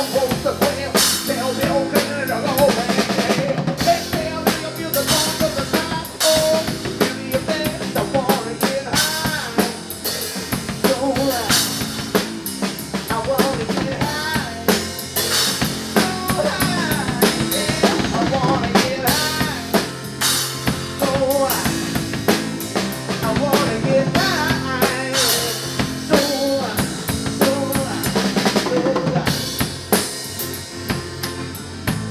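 Live band playing an instrumental stretch: a drum kit drives a busy beat with kick, snare and rimshots under bass guitar, and a melodic lead line with bending pitch runs over it.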